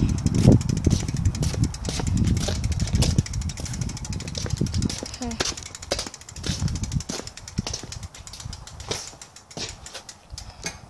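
Rumble and handling knocks on a handheld phone microphone carried outdoors while riding a bicycle, dying down over the second half.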